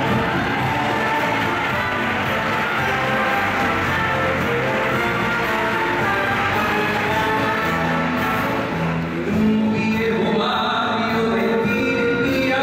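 Live orchestra of strings, brass and grand piano playing a song's introduction, with a man's singing voice coming in near the end.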